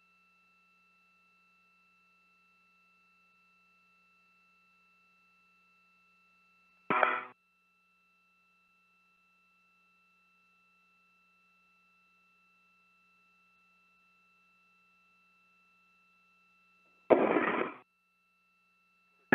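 Spacewalk air-to-ground radio loop, nearly silent apart from a faint steady hum and tone, broken by two short bursts of radio sound, one about seven seconds in and one near the end.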